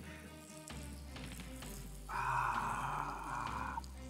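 A stream of urine hissing and splashing, starting about two seconds in and stopping abruptly under two seconds later, over quiet background music.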